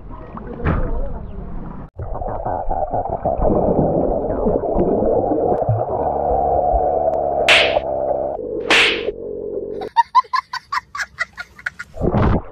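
Swimming-pool water splashing against a camera at the surface, then the muffled underwater sound of the pool as it goes under, with two sharp splashes. Near the end comes a quick series of pulsing, buzzy tones, about six a second.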